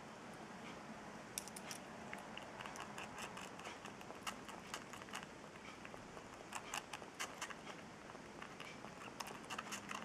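Baby squirrel feeding at a dropper tip, with faint wet clicks and smacks of its mouth on the dropper in irregular clusters, thickest in the middle and near the end.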